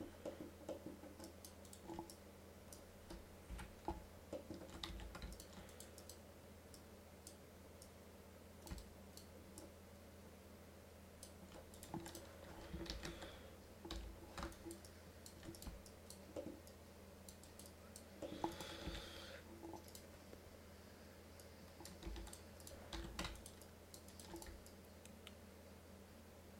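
Faint, irregular clicks and taps of a computer mouse and keyboard, over a steady low electrical hum.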